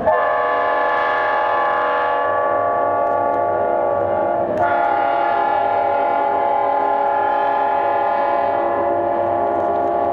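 Multi-note air horn of a Union Pacific EMD E9 passenger diesel sounding a chord in two long blasts, the second starting about four and a half seconds in and held nearly to the end.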